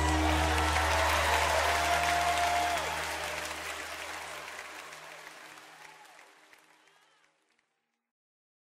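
Final sustained low chord of a live worship band ringing under audience applause. The whole mix fades out to silence about seven seconds in.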